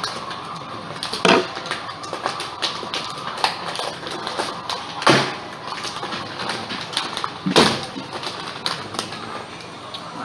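Plastic fish-shipping bags crinkling and rustling as they are handled, in scattered small crackles and clicks, with a few louder crackles about a second in, around five seconds and at about seven and a half seconds.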